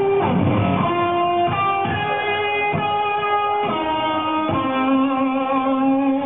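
Live rock band led by an electric guitar playing a line of long held notes, moving to a new note about once a second, with a sliding note near the start and drum hits underneath.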